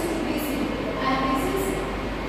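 A woman's voice speaking, over a steady low hum.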